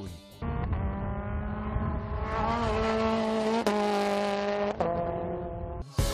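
Racing go-kart engine running at high, steady revs. The pitch rises slightly a little over two seconds in and shifts abruptly twice later on.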